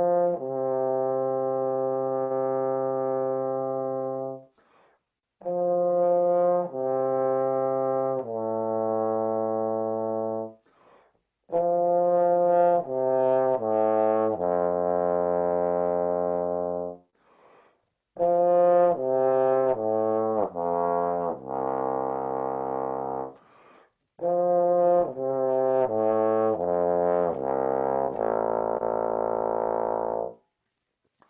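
Bass trombone playing a slow, slurred warm-up exercise in F major: five phrases of held notes separated by short breaths, each phrase stepping down, reaching from the middle register into the pedal register. The exercise is meant to connect the sound smoothly across two octaves.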